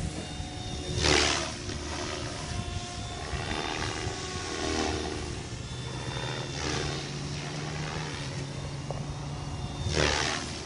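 Electric MSHeli Protos stretched RC helicopter flying with 470 mm main blades at about 2300 rpm head speed, its rotors and motor giving a steady whine. Louder rushing surges come about a second in and again at the end.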